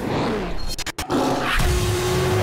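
Ferrari 488 Pista's twin-turbo V8 with its note falling away, then a brief drop-out about a second in. After it comes a Ferrari F12tdf's naturally aspirated V12 running at steady revs.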